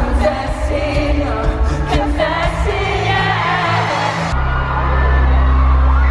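A pop song with a male lead vocal over a band. About four seconds in, the sound changes abruptly to a loud, held low bass note with the singing nearly gone.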